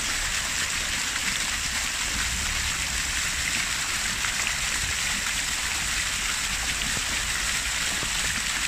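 Park fountain's water jets splashing steadily into the basin.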